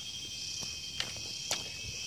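Steady, high-pitched chorus of insects chirring, with a couple of sharp clicks about one and one and a half seconds in, such as footsteps on dry twigs.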